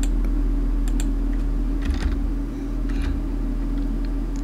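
A handful of scattered, irregular computer keyboard keystrokes, a few each second, over a steady low electrical hum.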